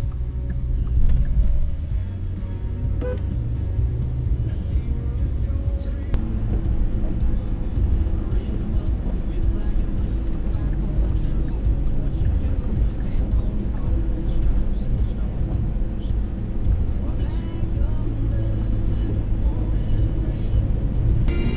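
Steady low road and engine rumble heard inside a moving car's cabin, with music playing.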